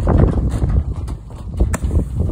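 Irregular footsteps and thuds on a corrugated metal roof, over a dense, rumbling low noise, with one sharp click near the end.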